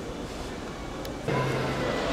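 Outdoor city background noise: a faint steady hiss of distant traffic. About a second and a half in it becomes louder, with a low steady hum underneath.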